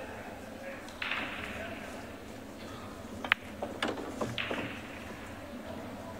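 Pool shot on a billiard table: a sharp click of balls colliding about three seconds in, followed by two further knocks as a ball is potted.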